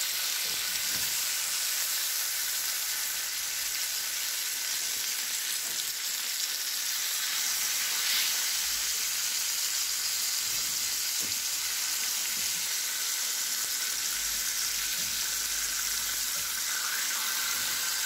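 Marinated chicken breasts sizzling steadily as they fry in oil in a shallow pan on a low flame.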